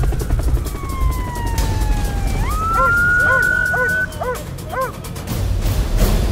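Police siren wailing over background music: its pitch falls slowly, then sweeps up and holds. In the second half a dog barks repeatedly, a few short barks a second.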